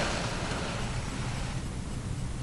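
Steady low hum under an even hiss, with a brief rustle at the very start.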